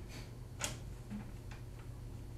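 Room tone with a steady low hum and a few scattered sharp clicks, the loudest a little over half a second in.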